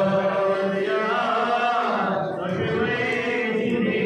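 Men's voices chanting together in a Sufi devotional chant, a continuous melodic line of long held notes that slide slowly in pitch.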